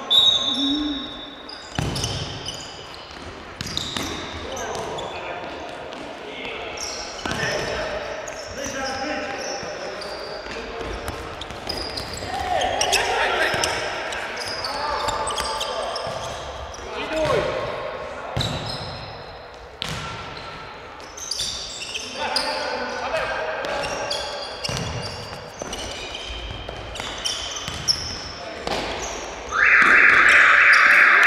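Futsal in an echoing sports hall: the ball thuds on the hard floor and off players' feet, shoes squeak, and players shout. Near the end a loud, steady electronic buzzer from the scoreboard starts abruptly, the signal that time is up.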